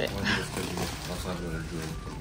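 A man's voice making a drawn-out, wordless sound, like a strained grunt, while he pushes a stuffed bag closed.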